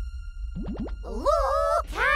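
Cartoon sound effects: a quick run of short rising boings about half a second in, then a longer boing-like tone that rises and holds, wavering, for about half a second, over a low steady rumble.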